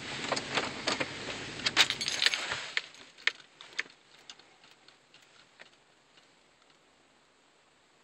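Car keys jangling with a run of light metallic clicks over a steady engine hum; the engine cuts off about two and a half seconds in, as the car is switched off after parking, and the jingling fades out soon after.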